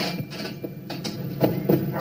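Packing tape pulled from a handheld dispenser and pressed onto a cardboard box: several short, sharp rasps and taps over faint background music.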